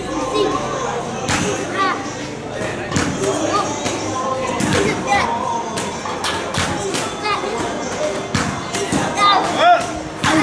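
Repeated thuds of a padded focus mitt striking a woman's bare stomach during sit-ups, roughly one a second and unevenly spaced, as abdominal conditioning.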